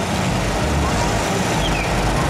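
Four-cylinder off-road 4x4 engine working under load as the truck climbs a dirt mound, the low engine sound swelling and easing in surges over a steady noisy wash.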